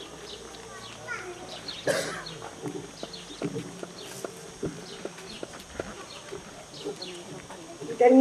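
Quiet open-air pause: faint murmur of voices and scattered bird chirps, with paper handling and shuffling near the microphone and one brief louder rustle about two seconds in.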